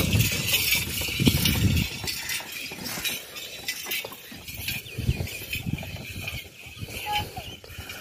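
Camel-drawn wooden cart rolling past on a paved road, its wheels and frame rattling and clattering. It is loudest for the first two seconds, then quieter and sparser.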